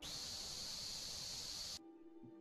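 A steady airy hiss into a microphone, lasting almost two seconds, that starts and cuts off abruptly. It sounded like somebody taking a hit off a vape against the mic, though nobody could place it.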